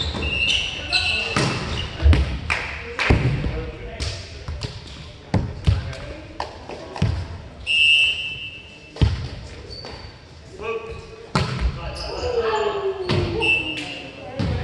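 Indoor volleyball play on a hardwood gym court: repeated sharp smacks of hands on the ball and the ball striking the floor, short high sneaker squeaks, and players' shouts, all echoing in the large hall.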